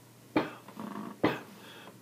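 A foot tapping time on the floor: two thumps just under a second apart.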